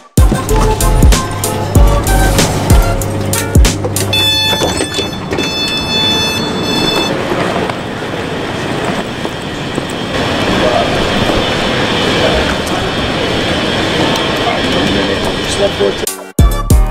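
Busy airport terminal ambience: a low hum with a few thumps, then a few seconds of steady high electronic tones. After that comes a continuous hubbub of voices, footsteps and wheeled suitcases rolling over a hard floor.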